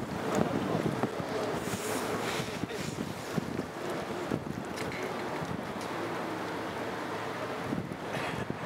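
Wind buffeting the microphone in uneven gusts over a steady background rumble.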